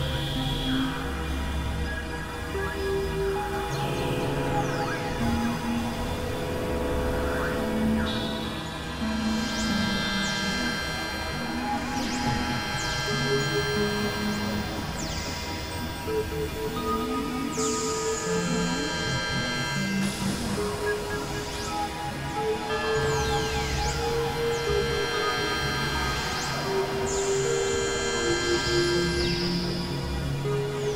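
Experimental electronic drone music from synthesizers, a Novation Supernova II and a Korg microKORG XL: layered sustained tones that change in steps every second or two over a low droning bass. Repeated sweeping glides run through the high register.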